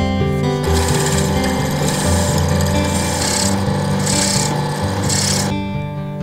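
Drill press bit cutting into a stabilized wood-and-resin knife handle scale, in four or five short pecks about a second apart, stopping near the end. Background music plays throughout.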